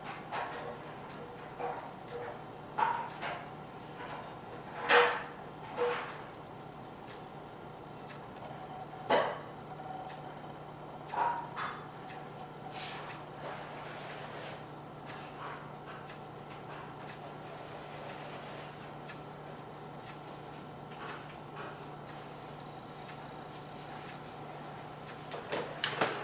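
Quiet room tone with a steady low hum, broken by a scattering of short knocks and creaks, the loudest about five and nine seconds in, thinning out after about thirteen seconds; these are the incidental sounds of the room during a silent piece, with no piano notes played.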